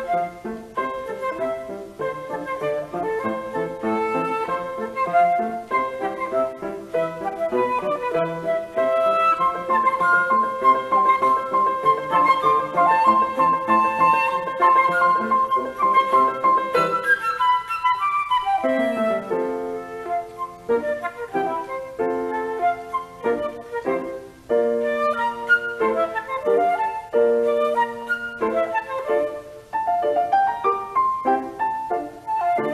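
Flute and grand piano duo playing a light classical piece. The flute holds long notes over a busy piano accompaniment, then about two-thirds through a falling run leads into short, repeated chords.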